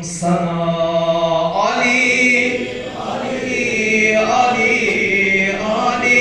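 A male voice chanting a devotional hymn of greeting in long held, melodic notes, the pitch stepping up about one and a half seconds in.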